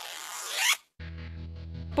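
A short rasping swish that rises in pitch and cuts off just before a second in, followed by background music with a steady bass line.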